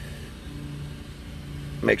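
Car engine idling steadily, heard from inside the cabin. The engine is left running so the amplifier gets full charging voltage.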